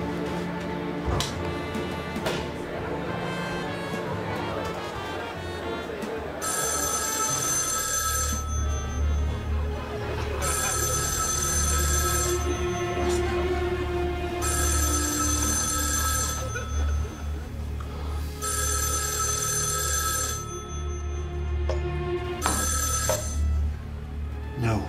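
Old-fashioned telephone bell ringing in repeated rings of about two seconds with two-second pauses, starting about a quarter of the way in, over a low, droning music score.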